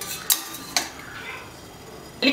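Steel tongs and a stainless steel steamer plate clinking against the rim and wire trivet of a pressure cooker as the plate of boiled amla is lifted out: three sharp metallic clinks within the first second.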